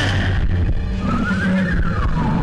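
Cartoon sound effects: a squeal-like tone slides down at the start, then another rises and falls in pitch over the second half, over a low drone.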